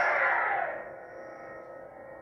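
Lightsaber hum from a Golden Harvest v3 sound board, with a sudden swing sound right at the start that falls in pitch and fades within about a second, leaving the steady hum.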